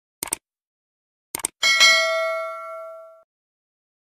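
Subscribe-button animation sound effect: two quick mouse clicks about a quarter second in, two more near a second and a half, then a bell ding that rings out and fades over about a second and a half.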